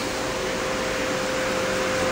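Steady hiss with a thin, steady tone underneath: background noise with no distinct event.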